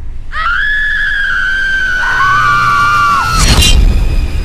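Two long, high screams, the second one lower and starting about halfway through. Both are cut off near the end by a loud crash.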